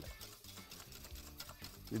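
Wire whisk stirring milk and sugar in a stainless steel saucepan, with faint, irregular clicks of the wires against the pan as the sugar is dissolved. Quiet background music sits underneath.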